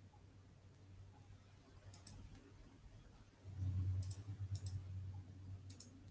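Computer mouse clicking a few times, each click a quick double tick: once about two seconds in, twice around four seconds in, and again near the end. A low rumble sits under the later clicks.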